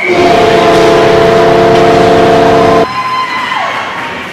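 Ice rink goal horn sounding one loud, steady blast of nearly three seconds that cuts off suddenly, signalling a goal.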